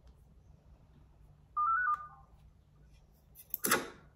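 A short electronic call chime of a few quick stepped notes about halfway through, the sound of a video call connecting. A brief loud noise follows near the end.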